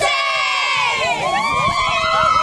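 A group of high school cheerleaders screaming and cheering together. Many high voices hold long shouts at once, some sliding down in pitch about halfway through as others take over.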